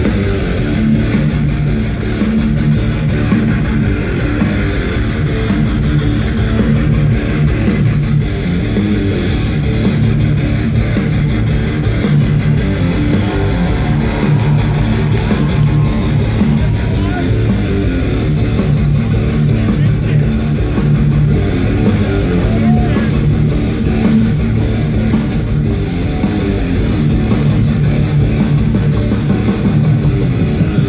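Live heavy metal band playing an instrumental passage: distorted electric guitars and bass over a steady drumbeat, loud throughout.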